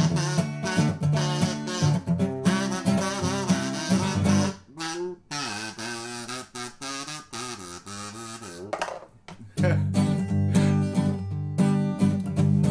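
Blues harmonica solo over a strummed acoustic guitar. About four and a half seconds in the guitar stops and the harmonica plays alone, cupped in the hand, with bent, wavering notes. The guitar strumming comes back in about two seconds before the end.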